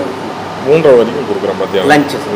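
Speech: a person talking at a table, with a steady low background hum.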